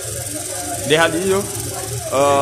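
A man's voice, briefly, about a second in, over a steady background hiss.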